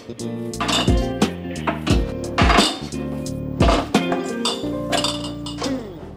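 Background music with a steady beat, over glass mason jars clinking as they are set down in a drawer.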